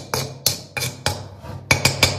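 Metal spoon knocking and scraping against a steel mixing pan as dry soil and Portland cement are stirred together: a quick run of clinks, about three or four a second, each ringing briefly.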